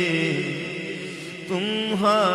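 A man's voice chanting a naat: a long held note that dips and fades over the first second and a half, then a new phrase starts with sliding, ornamented pitch.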